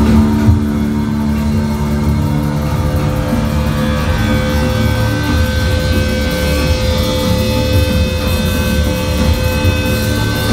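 Thrash metal band's amplified guitars and bass holding a loud, droning sustained chord with no drum beat: steady held tones over a heavy low rumble as the song builds before the full band comes in.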